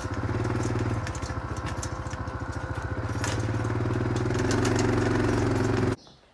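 Honda Foreman 450 S four-wheeler's single-cylinder engine running steadily under way, with an even pulse, a little louder in the second half. A few sharp clicks ride over it.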